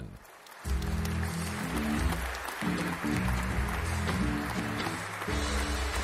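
A talk-show theme tune with a strong bass line and stepping chords, starting about half a second in. Under it runs a steady wash of studio-audience applause.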